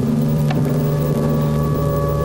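A steady low hum from the film soundtrack, with several held tones stacked over it and a short click about half a second in.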